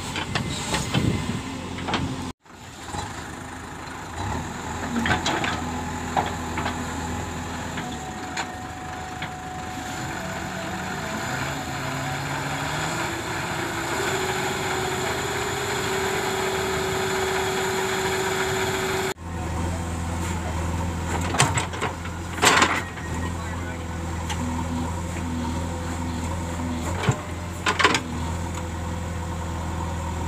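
The diesel engine of a JCB 3DX backhoe loader running under load while the backhoe digs soil, its pitch climbing in steps as it revs to work the hydraulics. After an abrupt change it settles into a deep steady drone, broken by several sharp metallic clanks from the bucket and arm.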